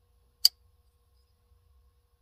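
A single sharp click from a Drop Orca folding knife as its blade snaps through the detent, about half a second in.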